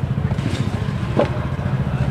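An engine idling steadily with a fast, even low chug.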